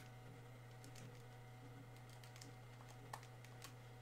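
Near silence with a few faint, scattered key clicks, as of typing, over a low steady hum.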